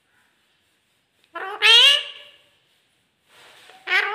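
A male rose-ringed parakeet (Indian ringneck) giving one loud call, about a second long, starting about a third of the way in. The call is in its high, raspy talking voice and rises then falls in pitch.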